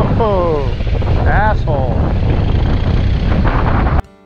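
Loud, steady wind rumble on the microphone. A person's voice calls out twice over it, each call falling in pitch.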